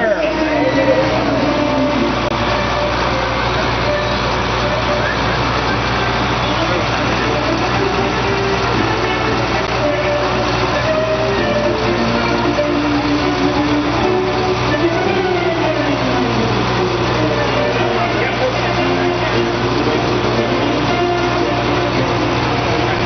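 A boom truck's engine running steadily while the boom lifts, a constant low hum that sets in at the start, with voices in the background.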